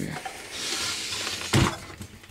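Handling noise on a cluttered workbench: a stretch of rustling and scraping, then a single sharp knock about one and a half seconds in.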